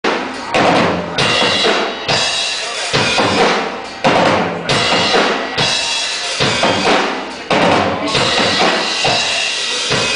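A live band playing loudly, led by a drum kit whose heavy bass-drum and snare hits land roughly once a second, recorded from within the audience.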